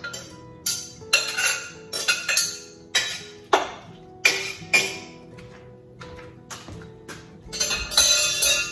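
Chopped peaches being scraped from a bowl into a steel stockpot: irregular clatter and clinks of a spoon against bowl and pot, mostly in the first five seconds. Background music with held notes plays underneath throughout.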